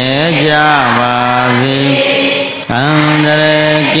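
Buddhist devotional chanting in long, held notes, the pitch dipping between phrases, with a brief pause about two and a half seconds in.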